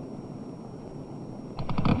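A low, steady rumble, then about one and a half seconds in a motorcycle engine sound cuts in with a rapid stutter of firing pulses that builds in loudness.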